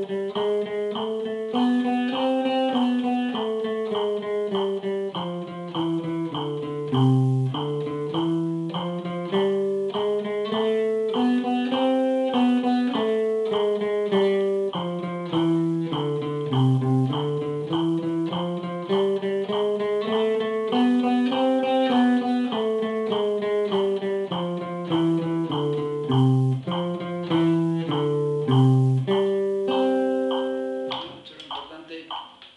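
Archtop jazz guitar played with a pick: a single-line eighth-note reading exercise of evenly spaced notes moving up and down by step. It is played with alternate picking, down-strokes on the beat and up-strokes off it, aiming at an even sound rather than speed. The notes stop just at the end.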